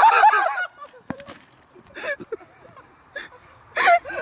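A man laughing hard: loud, high-pitched laughter in the first half-second, then quieter, scattered breathless bursts.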